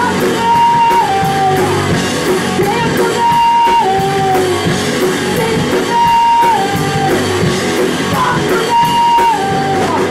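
Garage punk band playing live with electric bass, guitar and drum kit, a woman singing over it. A repeated phrase holds a high note and then steps down, coming round about every three seconds, four times.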